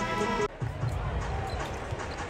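Arena music playing, cut off sharply about half a second in. Then a murmur of basketball crowd noise with low thuds of a basketball being dribbled on the hardwood court.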